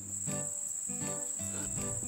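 Crickets chirring in one unbroken, high-pitched trill, with a few soft low notes of background music underneath.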